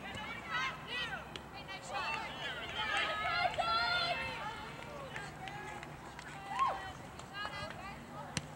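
Girls' soccer players and sideline voices shouting and calling during play, several calls overlapping, busiest about three to four seconds in, with one lone shout near the end.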